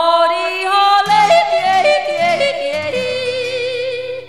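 A woman yodelling: held notes that break abruptly up and down between chest voice and falsetto, with quick warbling turns. A low musical accompaniment comes in under the voice about a second in.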